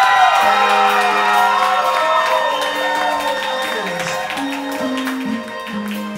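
Live band music, the opening of a song: sustained chords and melody lines, with low bass notes coming in about four seconds in.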